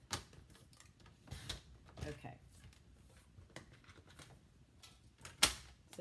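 Paper trimmer in use on cardstock: a string of light clicks, taps and brief scrapes as the blade carriage is slid along its track and the paper handled, with a sharper knock about five and a half seconds in as the trimmer is moved.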